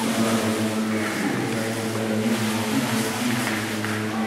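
A steady droning hum with a stack of overtones, wavering slightly about a second in.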